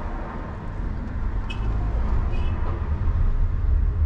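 Steady low road and engine rumble of a moving passenger van, heard from inside its cabin.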